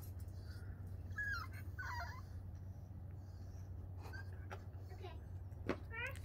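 French bulldog puppy whining in short, high-pitched, wavering cries, two plain ones about a second and two seconds in and fainter ones later. A sharp click near the end.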